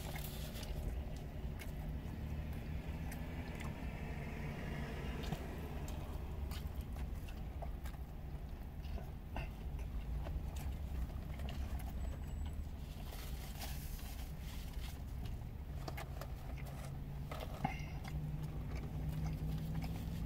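Quiet chewing and mouth sounds of people eating burgers, with scattered small clicks, over a steady low hum inside a car.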